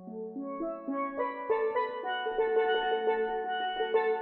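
Steel band music: steelpans playing a melody over rolled chords, growing fuller and louder from about a second in as more notes and pans come in.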